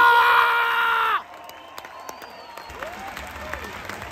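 A man screams in celebration of a match win: one loud, held yell lasting about a second. It breaks off, leaving a fainter crowd cheering and shouting.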